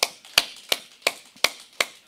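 A man clapping his hands at a steady count, about three sharp claps a second, six claps in all, as part of a counted set of ten.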